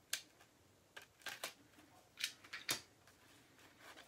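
A knife cutting at the plastic wrap of a sealed vinyl record, making faint crackles and scrapes of plastic. About six short sharp clicks are spread irregularly through it.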